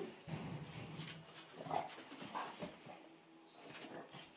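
English bulldog making a few short vocal noises, about a second and a half in and again near two and a half seconds. Between them come the scuffles of its body twisting on the carpet as it tries to get a taped-on tail off.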